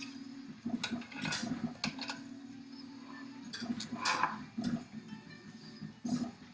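Soldering tools and a small circuit board handled on a workbench: scattered light clicks and taps, with the loudest cluster about four seconds in. Under them a low steady hum drops out and returns several times.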